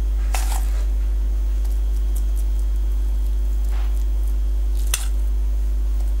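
A steady low electrical hum, with a few brief scrapes and a sharper knock of a metal spoon against a metal bowl as almond cream is scooped out and spread onto pastry.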